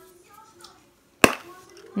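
A single sharp plastic snap about a second in: a chocolate surprise egg's orange plastic toy capsule popping open in an adult's hands.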